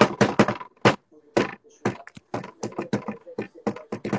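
Hands slapping a surface in a quick improvised drum roll, about eight strikes a second at first, then slower, irregular slaps.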